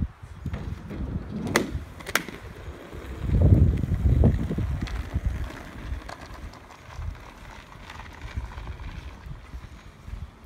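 Child's kick scooter on a wooden ramp and pavement: two sharp clacks about a second and a half and two seconds in, then a louder rumble of the small wheels rolling, settling into a steady rolling rumble on the asphalt.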